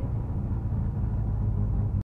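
Škoda rally car's engine running at low revs, a steady low rumble heard from inside the cabin as the car rolls slowly. It cuts off suddenly at the very end.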